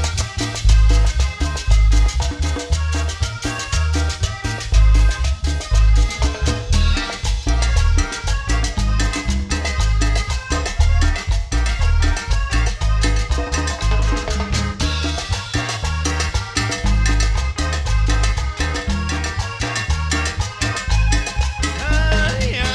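Live chanchona band playing cumbia, with a heavy bass line under a steady, driving percussion beat.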